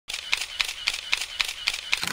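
Camera shutter clicking in a quick burst: seven sharp clicks, about four a second.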